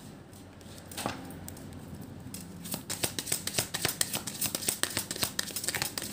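A deck of Lenormand cards being shuffled by hand. After a quieter start with a single tap about a second in, there is a quick run of crisp card-on-card clicks from about two and a half seconds on.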